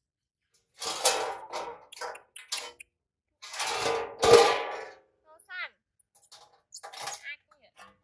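Water splashing in a stainless steel basin as a baby monkey is bathed, in two long bursts, the second the loudest. Short, high, wavering squeals from the baby monkey follow, twice, near the end.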